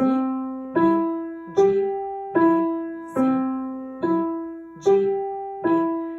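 Upright piano played one note at a time: eight single notes about a second apart, C, E, G, E, C, E, G, E, stepping up and back down, each struck and left to fade.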